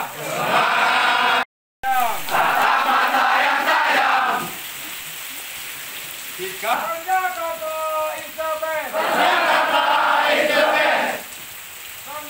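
A large group of trainees shouting a chant together in unison, loud and massed, with a brief break in the sound near the start. In the middle a single voice calls out alone, and then the group chants in unison again.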